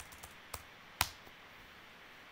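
Computer keyboard keystrokes while editing code: a few light key clicks, then one sharper, louder keystroke about a second in.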